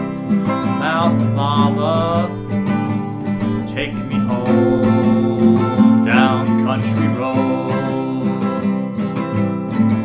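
Steel-string acoustic guitar strummed in a steady country rhythm, with a man's voice holding a few wordless notes about a second in and again around six seconds.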